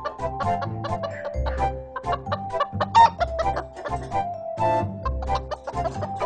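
Cartoon hen clucking over background music with a repeating bass line, with one sharp loud hit about halfway through.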